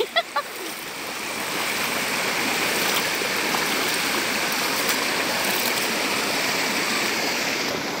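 Shallow mountain stream running over rocks and small rapids, a steady rushing that grows louder over the first couple of seconds and then holds.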